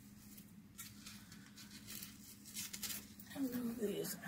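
Faint rustling and handling noise from tulle ribbon and a board decoration being picked up and moved, over a low steady hum; a voice starts near the end.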